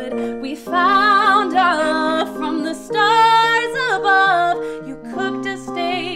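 A woman singing a slow love ballad in two long phrases with wavering vibrato, over held chords on an electronic keyboard that change every two seconds or so.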